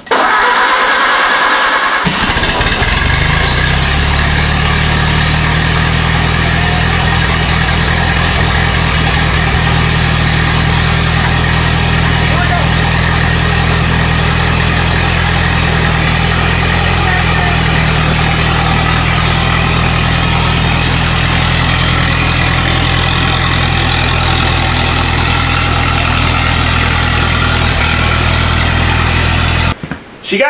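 Ford Model AA four-cylinder flathead engine in a homemade doodlebug tractor catching about two seconds in, then running at a steady idle.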